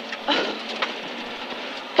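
Rally car at speed on a gravel road, heard from inside the cabin: a steady rushing noise of engine, tyres and stones, with a brief louder rush just after the start.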